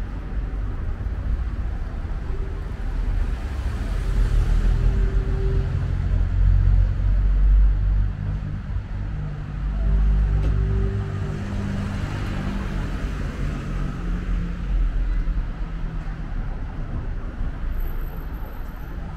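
Street traffic: a motor vehicle's engine rumbling past close by. It grows louder through the middle of the stretch and then eases back to a steady background traffic rumble.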